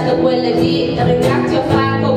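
Live music from an acoustic ensemble of guitars, double bass and singers, playing held chords.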